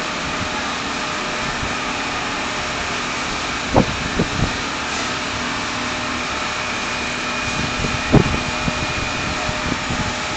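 Large fire truck's engine running at low speed as it inches through a tight turn, heard from a distance as a steady rumble mixed with street hum. Two short, louder sounds stand out, about four and eight seconds in.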